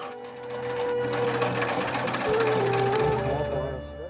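Industrial sewing machine stitching leather, running fast and steady as a rapid run of stitches. It swells in about half a second in and fades near the end.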